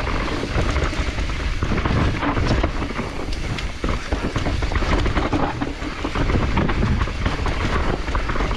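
Specialized Turbo Levo Gen 3 e-mountain bike on a fast descent over a dirt trail: tyres rumbling on the ground and the bike clattering with many quick knocks over roots and rocks, under steady wind buffeting on the microphone.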